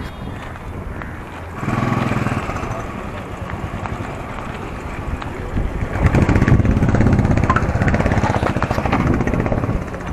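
Motorcycle engine running close by, a low rumble that grows louder about six seconds in and eases near the end, with wind on the microphone.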